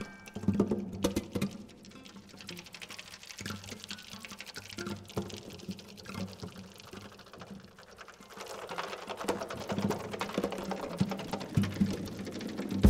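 Sparse soundtrack music built from irregular clicks and taps over a faint low drone. It grows busier and louder in the last few seconds.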